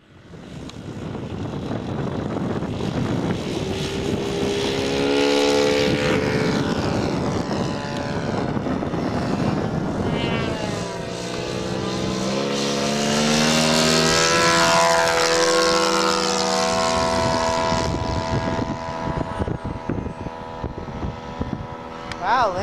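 Piston engines of large radio-controlled scale warbird models running at high throttle, first a Mustang on the grass, then, after a change about halfway, a Hellcat on its takeoff run and climb. The engine pitch falls and rises as each plane passes.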